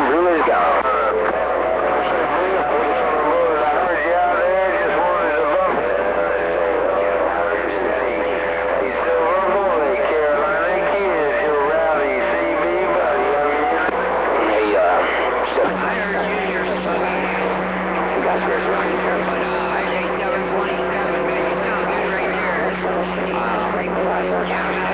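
CB radio receiving long-distance skip on a busy channel: distorted, overlapping voices run together with steady whistle tones from carriers on the frequency. A low steady tone joins about two-thirds of the way through.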